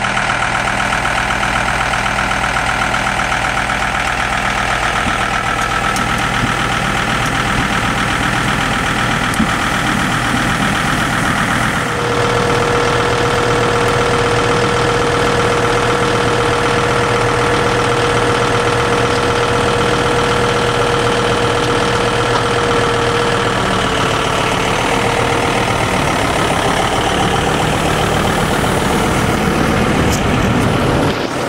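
Tractor engine running steadily. About twelve seconds in the sound changes abruptly, and a steady whine runs over the engine for roughly ten seconds.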